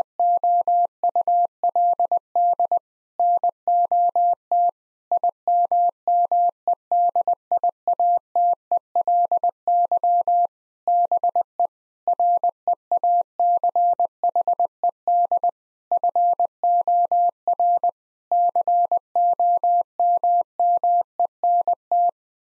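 Morse code sent at 20 words per minute as a single pure tone of about 700 Hz, keyed in dits and dahs with word gaps. It repeats the seven-word phrase just spoken, ending 'not immediately be reached for comment'.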